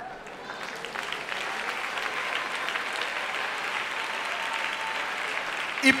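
Congregation applauding, building up over the first second or so and then holding steady until the preacher's voice returns at the very end.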